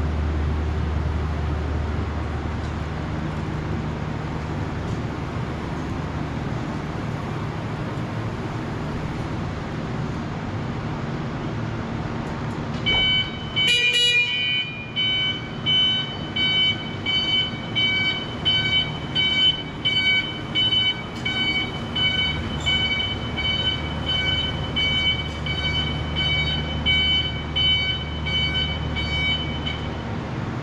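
Electric forklift running with a steady low motor hum, then, from a little under halfway through, its warning alarm beeping repeatedly at about one beep every three quarters of a second as the truck drives.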